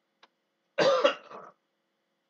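A man clears his throat once: a short, rough burst under a second long, loudest at the start and trailing off, after a faint click.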